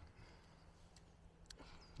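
Near silence: faint outdoor background, with one soft click about one and a half seconds in.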